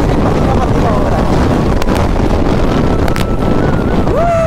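Heavy wind buffeting on the microphone of a motorcycle ridden at speed, with the KTM RC 200's engine running underneath. Two short clicks sound near the middle and toward the end.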